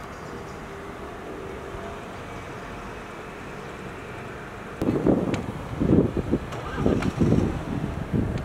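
Outdoor city ambience: a steady low hum of distant traffic, then from about five seconds in, irregular gusts of wind buffeting the microphone.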